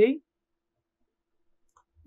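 The tail of a spoken word, then near silence broken by one faint computer-mouse click near the end.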